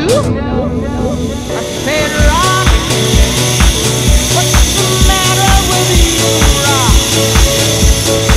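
Background music with a steady beat and a sung vocal line.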